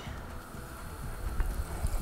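Hot cooking oil sizzling and bubbling as a flour-dredged chicken piece is lowered in to deep-fry, the oil at about 340–350°F.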